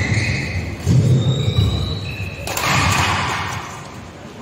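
Badminton hall sounds between rallies: short high squeaks of shoes on the court and low thuds of footsteps. A burst of voices comes about two and a half seconds in.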